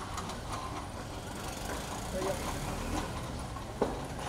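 Street noise with a steady low rumble of traffic and scattered indistinct voices, and one sharp click shortly before the end.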